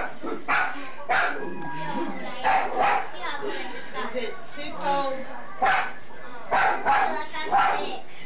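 A dog barking repeatedly off camera: about ten short barks at uneven intervals.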